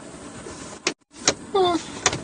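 Steady hiss of a voice recording, broken by two sharp clicks and a brief dropout to silence about halfway through. Near the end comes a short vocal sound that rises in pitch.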